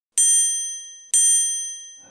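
Two identical bright chime dings, about a second apart, each ringing out and fading: a sound effect for an animated logo intro.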